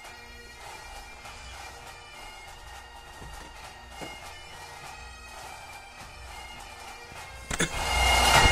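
Bagpipe music: a steady drone under the melody. Shortly before the end, a sharp knock and the sound jumps louder.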